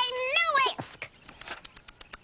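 A high, drawn-out vocal cry that rises near its end and breaks off just under a second in, followed by a few faint clicks.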